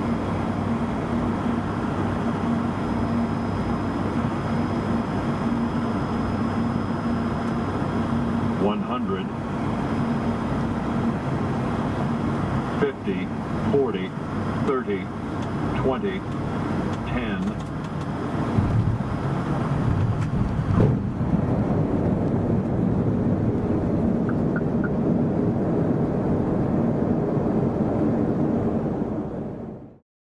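ATR turboprop's engines and propellers droning steadily in the cockpit through the flare and landing, with a few short voice callouts between about 9 and 17 seconds in. From about 18 seconds in a low rumble grows as the aircraft touches down and rolls on the runway, the high whine stops soon after, and the sound fades out at the end.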